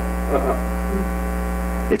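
Steady electrical mains hum, a low buzz with a ladder of evenly spaced overtones.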